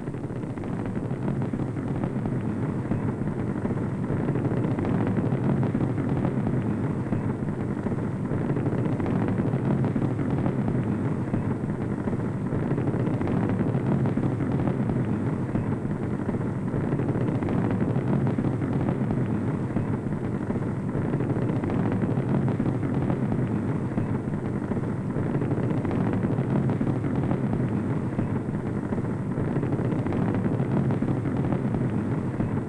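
Low, steady rumble of the Saturn V's five first-stage F-1 rocket engines burning during ascent, swelling over the first few seconds and then holding steady.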